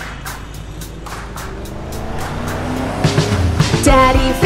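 Cartoon car sound effects of a vehicle driving in, a noisy rush that slowly grows louder, over quiet background music with a steady beat.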